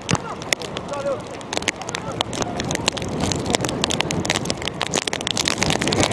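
Live field sound of an outdoor football match: short shouts from players and coaches carry across the pitch over a steady background noise. Many irregular sharp ticks run throughout.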